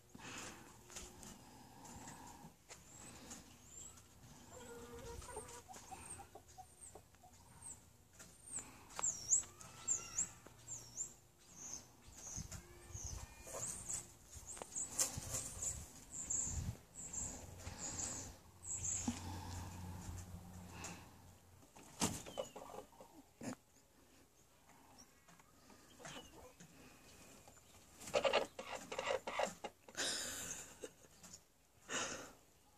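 Hens clucking softly in barrel nest boxes, with a run of high, repeated chirps through the middle and a louder burst of clucking near the end.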